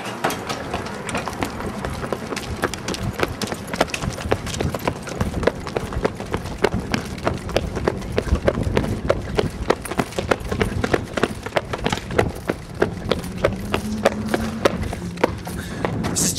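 Running footsteps on pavement: a quick, uneven patter of steps that goes on the whole time.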